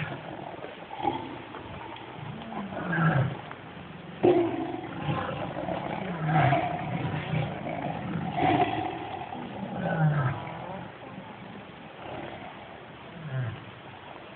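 Tigers roaring: a run of short, low calls, each falling in pitch, repeated every second or few seconds, with a sharp knock about four seconds in.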